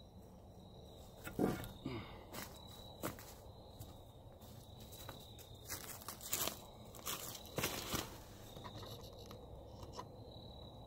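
Footsteps crunching through dry leaf litter, a scattering of soft, irregular steps and rustles, with a thin high insect trill that comes and goes behind them.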